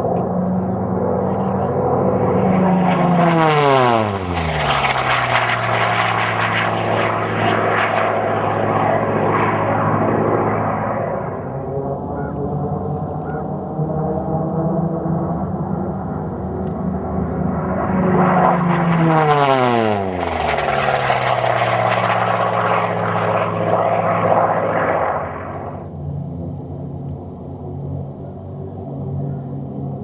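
Unlimited-class piston-engine racing warbird at full power, flying two low passes. Each pass builds to a peak, then the engine note drops steeply as the plane goes by, about three seconds in and again about nineteen seconds in. A fainter, steady engine drone follows near the end.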